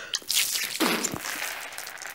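Water squirted hard from a squeezed plastic bottle, spraying and splashing over a face and open mouth. It is a hissing spray with a couple of stronger surges, about half a second and a second in.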